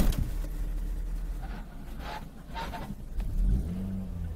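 Car engine and road noise heard from inside a car through a dashcam's microphone: a steady low rumble, with an engine note rising briefly about three and a half seconds in.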